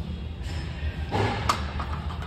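A weight plate being slid onto a barbell sleeve, with one sharp clank about a second and a half in, over background music.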